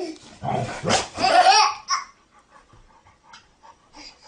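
A dog barking and vocalizing several times in the first two seconds, then only faint sounds.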